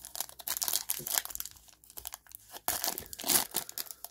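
A foil trading-card pack wrapper being torn open and crinkled by hand: a run of irregular crackles, loudest about three seconds in.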